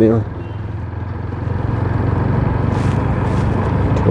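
TVS Apache RTR motorcycle's single-cylinder engine running at low road speed: a steady low hum that builds slightly in level.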